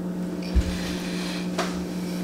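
A mouthful of popcorn being chewed, with a soft knock about half a second in and faint crunching, over a steady low hum.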